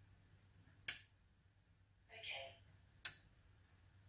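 A relay on a Sonoff 4CH Pro board clicking on about a second in and clicking off again about two seconds later: one momentary pulse of a channel in inching mode, answering a voice command. A brief faint voice-like sound comes between the two clicks.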